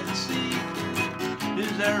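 Urban-brand acoustic guitar strummed in a steady rhythm, about four strums a second, playing chords for the song's accompaniment.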